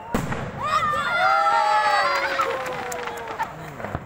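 A firework bursts with one sharp bang just after the start, echoing off the hillside, and a group of onlookers answers with cheers and long whoops; a few fainter pops follow in the middle.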